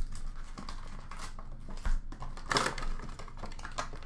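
Handling and opening a cardboard retail box of trading card packs: a thump at the start and another near two seconds, a rustle of packaging about two and a half seconds in, and small clicks and taps of cardboard and packs throughout.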